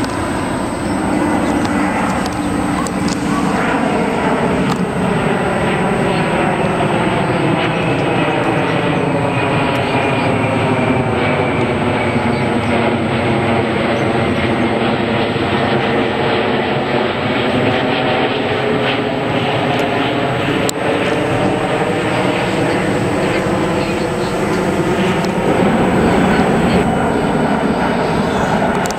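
Twin-engine jet airliner climbing out and passing overhead: a steady jet-engine roar with a hollow, sweeping sound that falls in pitch and rises again as the plane goes over, about halfway through.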